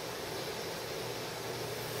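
Steady, even hiss of room tone and recording noise.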